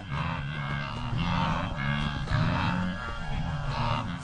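Wildebeest herd grunting: a continual run of short, low grunts from several animals, overlapping at two or three a second.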